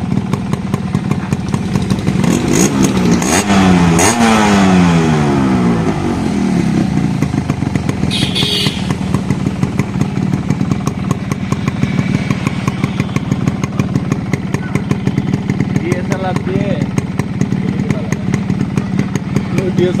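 Yamaha RX 115's two-stroke single-cylinder engine running with the bike standing still, revved up briefly about two to four seconds in, then dropping back to a steady, fast-ticking idle.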